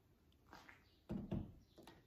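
A large plastic jug of dish soap set down on a granite counter: two dull thuds a little after a second in, with a few light plastic clicks around them.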